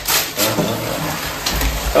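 Gift wrapping paper being torn and crinkled as a small wrapped present is opened, with a few sharper rips among the rustling.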